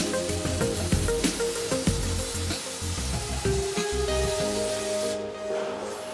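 Plasma cutting torch arc hissing and crackling as it cuts through a steel beam, cutting off abruptly about five seconds in when the arc shuts off, under background music.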